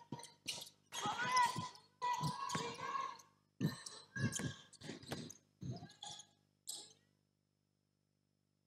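Faint sounds of a basketball drill on a court: a run of short, irregular ball thuds mixed with players calling out, dying away about seven seconds in.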